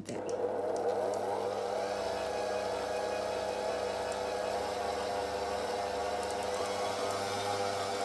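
Electric tilt-head stand mixer beating softened butter and icing sugar in a steel bowl. Its motor whir rises in pitch over the first couple of seconds as the speed is turned up a little, then runs steadily.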